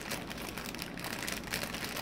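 Clear plastic bag crinkling and rustling as it is handled, the small baggies of diamond painting drills inside shifting against each other: a steady run of small crackles.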